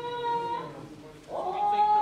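Long held notes of kagura stage music. A steady pitched note ends about half a second in, and after a brief dip a higher note slides up and holds.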